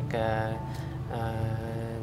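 A man's drawn-out hesitation sound, "uh", held twice on a steady pitch, over a faint background music bed.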